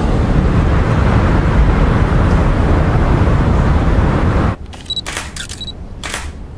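A loud, steady rush of city noise, heavy in the low end, that cuts off abruptly about four and a half seconds in. It gives way to a quick run of camera shutter clicks from press photographers, a couple of them with a short high beep.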